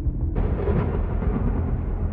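Background score with a deep, rumbling drone; a rush of noise comes in about a third of a second in and carries on under it.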